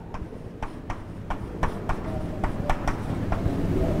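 Chalk writing on a chalkboard: a quick, irregular run of small taps and scrapes as each letter is formed, over a low steady room hum.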